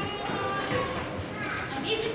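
Indistinct chatter of many voices, children's among them, talking at once in a large gymnasium.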